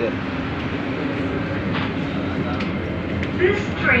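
Electric metro train running, heard from inside the passenger car: a steady rumble with a low steady hum.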